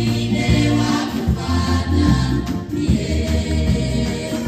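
A choir and congregation singing a gospel song, with lead voices amplified through microphones, over a low sustained musical accompaniment.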